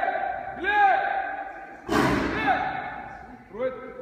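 A man's short, loud shouted calls, each rising and falling in pitch, given several times as commands to circus lions and tigers. About two seconds in there is a single sharp crack that echoes in the hall.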